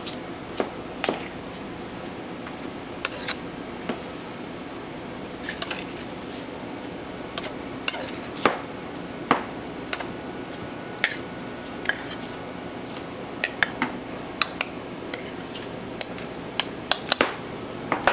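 A metal serving spoon clinking and scraping against a sauté pan and ceramic casserole dishes as saucy diced potatoes are spooned out: irregular sharp clinks and knocks, a few of them louder, over a steady kitchen background hum.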